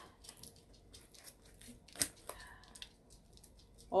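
Grilled dried squid being torn apart by hand: faint, dry, fibrous crackling, with two sharper snaps about halfway through.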